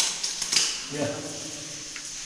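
Mostly speech: a man says "yeah" over a steady hiss, with a couple of short, sharp clicks near the start and about half a second in.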